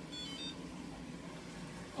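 Smeg tumble dryer's control panel sounding its power-on chime when the power button is pressed: a brief run of a few high electronic beeps at changing pitches, lasting about half a second.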